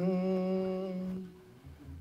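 A man humming one held note into a handheld microphone, breaking off a little past a second in.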